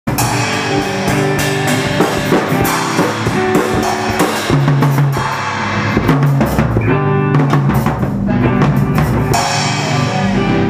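A live rock band jamming: a drum kit played hard, with cymbal crashes, snare and bass drum, over sustained notes from electric guitar.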